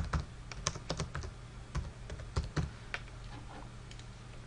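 Typing on a computer keyboard: irregular, separate key clicks as a word is typed, over a steady low hum.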